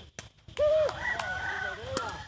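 A rooster crowing, one long call starting about half a second in, with a few sharp knocks of a sepak takraw ball being kicked.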